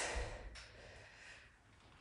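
A man's heavy breath out while pressing dumbbells, short and fading within about half a second.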